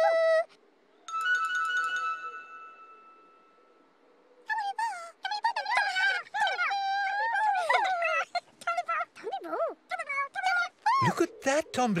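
A single bright, bell-like chime rings out about a second in and fades away over about three seconds. Then high-pitched, sing-song nonsense voices of children's-TV characters babble to one another for several seconds.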